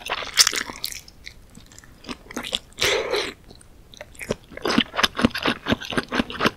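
Close-miked biting and chewing of soft Korean fish cake (eomuk): a loud bite in the first second, then a brief noisy rush about three seconds in, then quick wet chewing at about four to five chews a second over the last second and a half.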